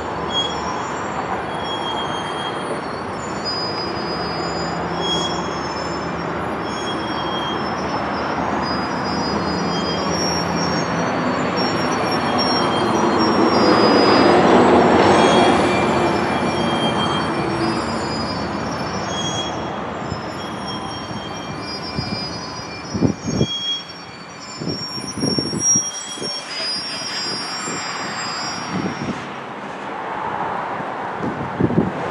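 Freight cars rolling past, with steady rail rumble and wheel flanges squealing in short high-pitched tones. It is loudest about halfway through, then eases off.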